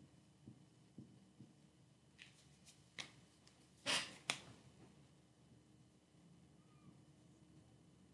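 Faint, sparse taps and scratches of writing by hand, with two louder short scrapes about four seconds in.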